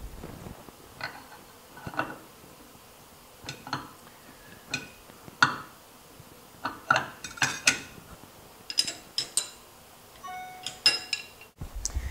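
Steel dado stack blades and chippers clinking against one another and the table saw's arbor as they are fitted by hand: a scatter of light metal clicks, busier a little past the middle, with a few short ringing clinks near the end.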